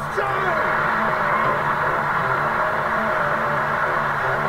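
Football stadium crowd cheering and shouting as a goal goes in: a dense, continuous roar of many voices.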